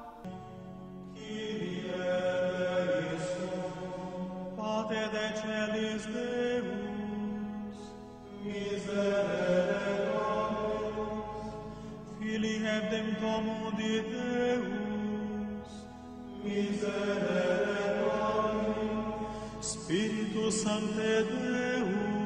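A group of voices chanting a slow hymn in repeated phrases, each starting about every four seconds and swelling, then easing off.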